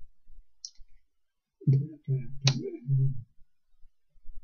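A man's voice making a quick run of short, wordless hums like "mm-hmm" about halfway through, with faint clicks and taps around them.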